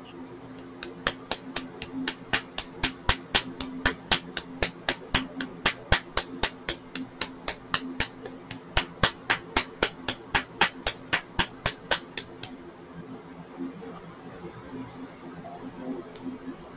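A nail polish bottle being shaken, its mixing bead clicking against the glass about four times a second. The clicking starts just after the beginning and stops about twelve and a half seconds in.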